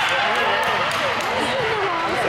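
Many high voices talking and calling out over one another in a gym, a steady hubbub with no clear words, with a few scattered sharp knocks that fit balls bouncing on the hardwood floor.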